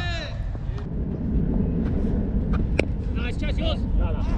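Players' shouted calls carrying across an open cricket field: one drawn-out call at the start and a few shorter calls near the end, over a steady low rumble, with a single sharp click about three seconds in.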